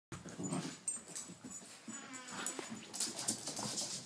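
Small dogs, a Cavachon and a Yorkshire terrier, making short, irregular sounds as they play on the carpet, with a brief pitched cry about two seconds in.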